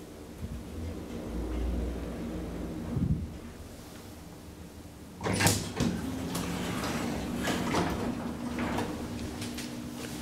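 KONE elevator's sliding car and landing doors opening: a low rumble and a knock in the first three seconds, then a sudden bang about five seconds in as the doors move, followed by clattering knocks over a steady door-motor hum.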